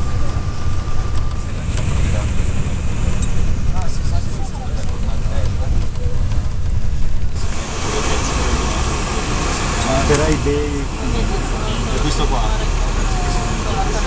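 Steady low rumble of road and engine noise heard from inside a moving car, with a sudden change about seven seconds in, after which there is more hiss.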